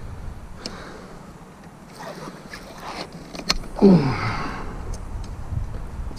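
Metal clicks and clinks of a steel body-grip trap and its wire being handled at the water's edge, with a short sound falling in pitch about four seconds in.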